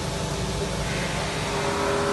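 Steady machinery noise with a low rumble; about a second and a half in, a steady multi-tone motor hum comes in on top.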